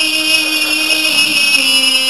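A male Quran reciter's voice, amplified through a microphone, holds one long sustained note, and the pitch steps down slightly near the end.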